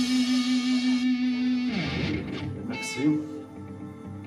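Electric guitar holding a long sustained note that bends down in pitch about two seconds in, then a last note about a second later that rings out and fades as the piece ends.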